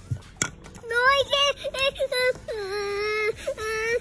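A toddler's high voice vocalizing in a wavering sing-song, sliding up and down, with one longer held note about halfway through.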